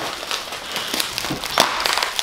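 Plastic packaging crinkling and rustling as an item wrapped in clear plastic is handled and pulled from a cardboard box, with a louder rustle about one and a half seconds in.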